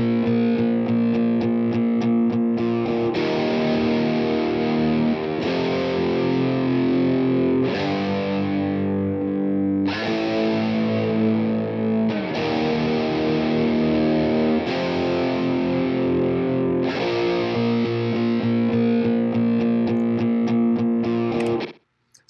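Heavy distorted electric guitar tracks played back through the BIAS FX 2 amp-simulator plugin: sustained chords that change about every two to two and a half seconds and stop just before the end. The crackling is gone, with the resonance and high end on the plugin's power amp turned down.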